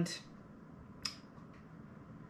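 Quiet room tone in a pause between words, broken by a single short, sharp click about halfway through.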